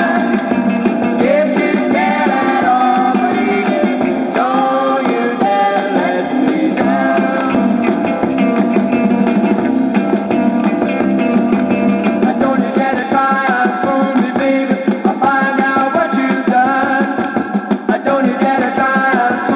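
A 1960s British beat single playing from a 7-inch vinyl record on a turntable: a band with singing and guitar, sounding thin with almost no bass.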